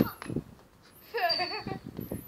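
A football struck with a sharp thump at the start, then a smaller knock, followed about a second in by a boy's short excited shout.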